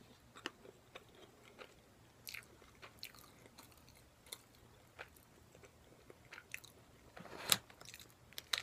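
Close-up mouth sounds of chewing a bitten, breaded and fried menchi katsu: scattered sharp, crunchy clicks and short crackles. A louder, longer noise comes near the end.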